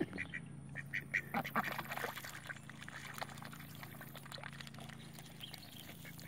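Mallard-type ducks quacking several short, soft times in the first two seconds or so, over a steady low hum.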